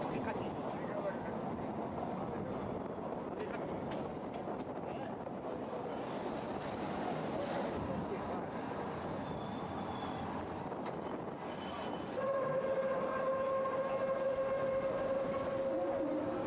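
Bernina Express train running, with the continuous rumble of the carriage and wheels heard from inside the carriage. About twelve seconds in, a steady pitched tone sets in and holds for the rest of the stretch.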